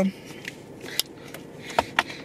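A few light, scattered clicks and taps over a low background, the sharpest one near the end.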